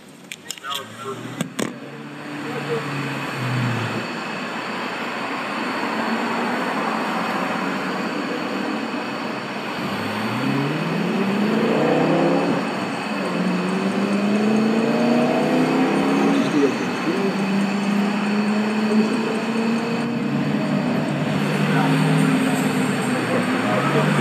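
Motor vehicle engines and road noise: a steady rush with engine tones that rise and fall over several seconds, starting about ten seconds in. A few sharp knocks come in the first two seconds, as the camera is handled.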